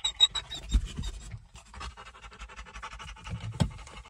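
Phone handling noise: rubbing and scraping against the microphone, with several dull knocks, the loudest near the end. A quick run of short high beeps comes in the first second.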